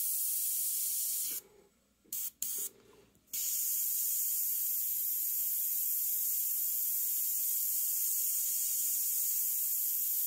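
Iwata Custom Micron airbrush hissing steadily as it sprays paint. The air cuts off about one and a half seconds in, gives one short puff, then comes back on about three seconds in and runs steadily again.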